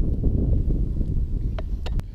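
Wind buffeting the microphone: a steady low rumble, with two faint clicks near the end.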